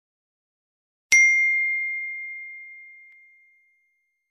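A single bright bell ding from a notification-bell sound effect. It is struck about a second in and rings one clear tone that fades away over about two and a half seconds.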